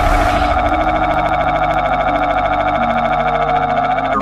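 A loud, steady electric buzzing sound effect, a rapid crackling hum from an electricity attack, with low music notes moving underneath.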